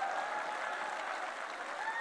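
Large audience applauding, a steady, fairly faint clapping wash with some crowd voices in it.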